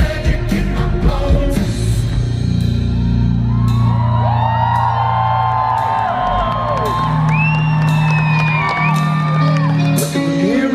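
Live rock band playing loud. Drum hits stop about two seconds in, leaving held low bass chords, over which many voices whoop and yell, sliding up and down in pitch.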